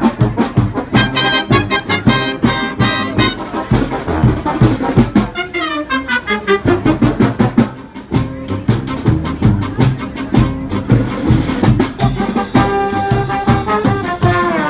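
Brass marching band playing live: trumpets, trombones and a sousaphone over a steady drum beat. Short punchy notes at first, a descending run about halfway through, and held chords near the end.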